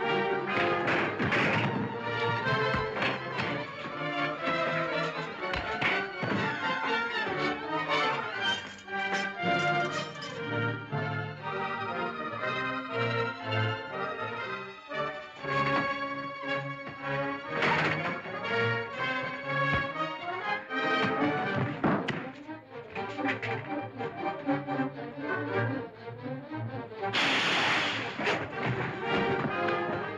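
Dramatic orchestral action score with brass, over the thuds and blows of a fistfight. A loud crash comes about three seconds before the end.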